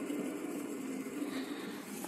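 Fidget spinner whirring on its bearing, a steady hum that fades slightly towards the end as it slows.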